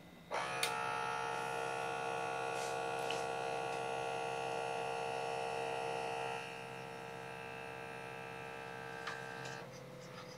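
Small electric air pump of an automatic upper-arm blood pressure monitor (Vive BPM) inflating the cuff: a steady buzz that starts suddenly, gets quieter about six seconds in and cuts off abruptly near the end.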